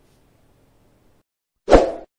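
A single short, loud pop sound effect about a second and a half in, as a subscribe-button animation pops onto the screen.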